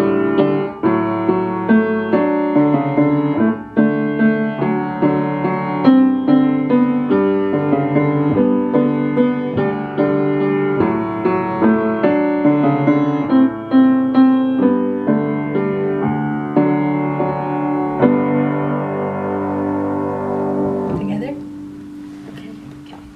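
A piano duet played four-hands on an upright piano, a melody over chords, with a steady run of struck notes. It ends on a held chord that fades away about a second before the end.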